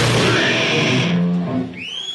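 Live death metal band ending a song: distorted guitars, bass and drums play loud and dense until about halfway, then stop on a low ringing chord that fades out.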